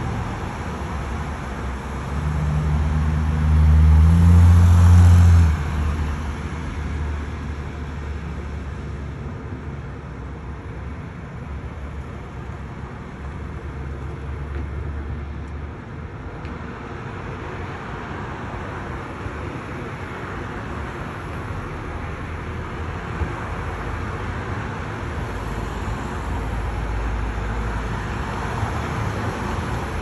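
City street traffic: a vehicle's low engine rumble swells loud between about two and six seconds in, then a steady wash of passing cars and road noise, with another vehicle's rumble building near the end.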